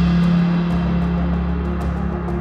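Background music with a held low note and faint high ticks.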